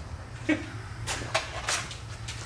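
Quiet workshop room tone: a steady low hum with a few faint, short clicks and knocks scattered through it.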